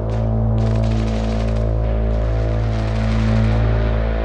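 Downtempo electronic music intro: a sustained low synth drone of steady tones, with hissing swells of noise rising and falling above it.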